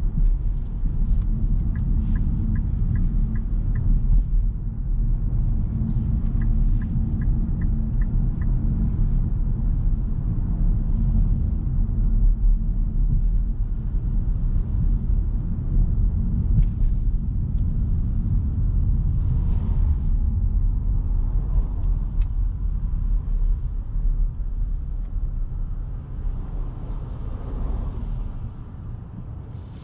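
In-cabin road noise of a Nissan Note e-POWER AUTECH Crossover 4WD driving at about 40 km/h on city streets: a steady low rumble from tyres and road, easing near the end as the car slows. Two short runs of six light, evenly spaced ticks sound early on.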